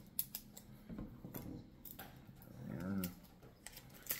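Small knife cutting and fingers tearing at the plastic shrink-band safety seal on a hot sauce bottle's neck: a scatter of sharp clicks, snaps and crinkles from the plastic as the band is worked loose.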